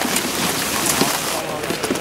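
Steady wind hissing across the camera microphone on an open ski summit, with faint voices underneath.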